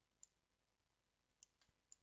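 Near silence with three faint, short clicks of a computer mouse.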